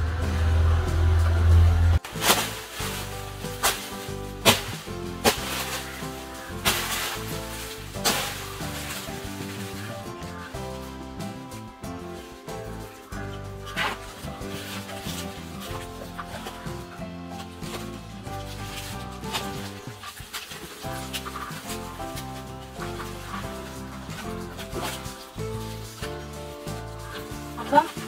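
Instrumental background music with a steady, stepwise melody. Several sharp knocks sound over it in the first several seconds, and one more about halfway through.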